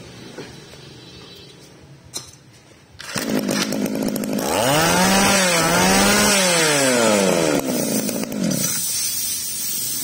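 A Nativo two-stroke brush cutter engine (20–23 cc) starting about three seconds in, then revved up twice and let back down to a steady fast idle.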